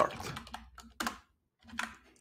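Computer keyboard keystrokes: a few separate sharp key clicks about a second apart, with quiet gaps between, as a terminal command is typed.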